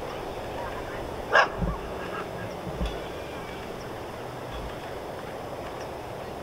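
A single short, loud animal call about a second and a half in, then a few low thumps, over a steady outdoor hiss.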